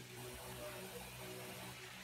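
Faint steady hum of an electric pedestal fan running, under a faint hiss.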